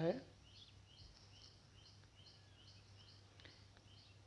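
Faint, quick bird chirps repeating about three times a second over a low steady hum.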